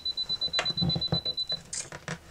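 A thin knife blade worked under a glued acoustic guitar bridge, making a quick run of short scraping clicks, about six a second, as the glue joint is pried. A steady, high beeping tone sounds through it and stops about one and a half seconds in.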